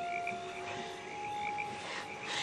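Frogs calling in a night-time chorus, short chirps repeating over a faint background hiss.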